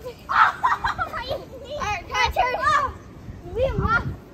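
Children's high voices calling out in play, several short overlapping calls rather than clear words.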